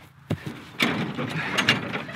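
Scrap-metal mower deck frame and push-mower mounting parts being worked into place by hand: a single knock about a third of a second in, then a run of clattering knocks and scraping from about a second in.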